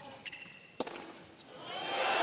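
Two sharp tennis-ball impacts on an indoor hard court, about half a second apart, with a brief high squeak just after the first. Near the end the crowd noise starts to swell as the match point is won.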